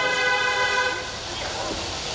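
A long steady horn-like tone with several overtones, holding one pitch and cutting off about a second in.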